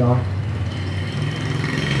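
A steady low mechanical hum, with a faint higher whine joining about a second in, after a man's single short spoken word at the start.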